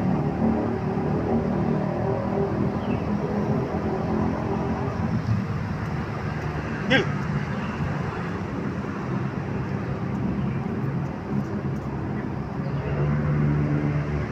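Steady low drone of motor traffic running throughout. About halfway through, a man's single sharp "No!" cuts in as a correction to the dog.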